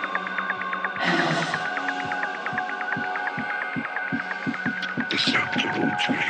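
Techno track in a stripped-down passage: steady held synth tones over a fast ticking pattern and a bass pulse about three times a second. Noisy percussion hits come back in near the end.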